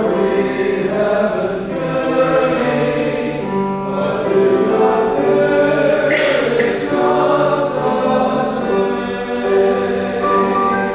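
Church prelude: a choir singing slow, held chords.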